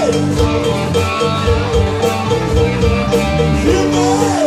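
Live rock band playing an instrumental break, with a harmonica lead played into a vocal microphone over drums, bass and guitar; the lead wavers and bends in pitch.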